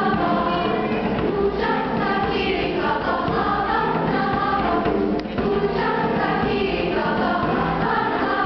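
A choir of young girls singing together.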